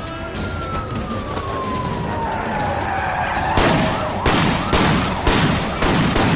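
Police car siren winding down in one long falling wail as patrol cars pull up. In the last couple of seconds come about five loud, short bursts of noise under a music score.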